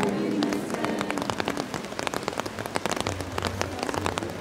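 Rain falling, a dense, uneven pattering of many drop hits. A faint low hum comes in about three seconds in.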